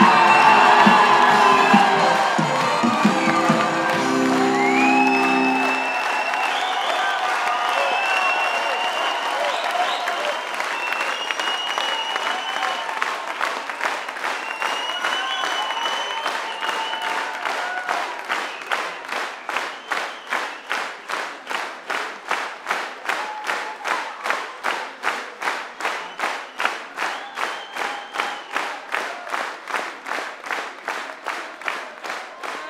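Theatre audience applauding and cheering over the end of the show's band music, which stops about six seconds in. From about eighteen seconds the applause turns into rhythmic clapping in unison, about two claps a second.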